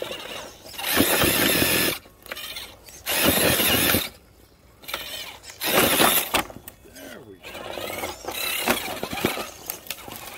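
Scale RC rock crawler's electric motor and drivetrain whining in short bursts of throttle as it climbs over rocks, about four bursts of a second or so each with pauses between.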